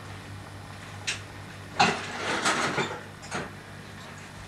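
A few short knocks and rattles, the loudest a little under two seconds in followed by a brief clatter, over a steady low hum.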